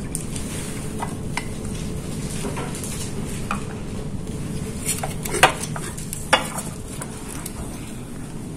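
Glassware being handled on a lab bench: light knocks and rattles over a steady low hum, with two sharp glass clinks past the middle.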